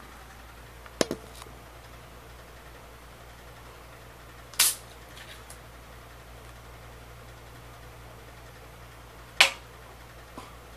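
Three short, sharp clicks or knocks from something handled close to the microphone, about a second in, around the middle and, loudest, near the end, over a low steady hum.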